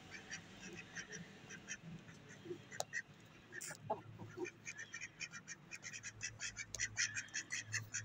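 Budgerigars chattering: rapid short chirps and warbles, scattered at first, then dense and continuous in the second half, over a low steady hum.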